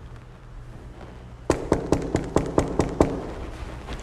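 Knuckles knocking rapidly on a door, about a dozen quick knocks starting about a second and a half in.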